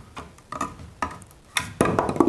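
Straight claw hammer prying a plastic Carlon nail-on electrical box off a wooden stud, the nails working loose. A few scattered clicks and creaks, then a louder knock near the end as the box comes free.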